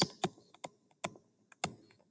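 Stylus tip clicking and tapping on a tablet's writing surface while handwriting, several light, irregular clicks a second.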